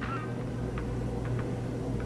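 Faint scrapes and light taps of a plastic spatula pushing crumbled ground turkey into a bowl, a few small ticks over a steady low hum.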